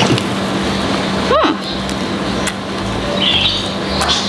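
A person biting into a deep-fried battered snack on a stick and chewing it close to the microphone, with a closed-mouth 'hmm' that rises and falls about a second and a half in.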